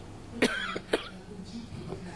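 A woman coughing twice into a close microphone, the two coughs about half a second apart.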